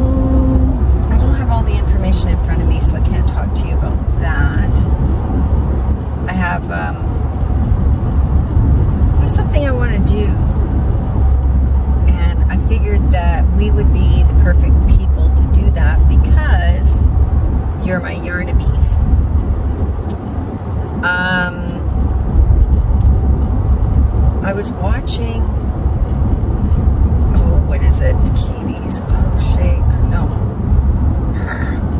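Steady low rumble of road and engine noise inside a moving car's cabin, rising and falling a little as the car drives.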